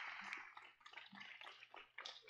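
Faint, scattered hand claps from a small congregation, thinning out within the first half second to sparse single claps.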